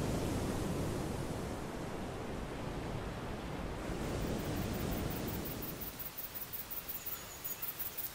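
Stormy-sea sound-effect ambience of rain and surf, an even hiss that fades away about six seconds in. Near the end a faint, rapid pulsing chirr comes in.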